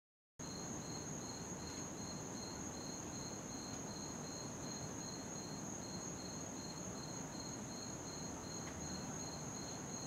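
Crickets chirping: one high, steady trill together with a lower chirp pulsing evenly about three times a second, over a faint low background hum. The sound cuts in abruptly just after the start.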